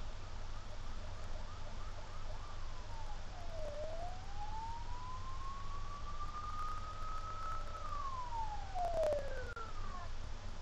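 Emergency-vehicle siren played through a TV's speaker: a few quick yelping chirps, then a slow rise and a long fall in pitch, with another falling wail near the end.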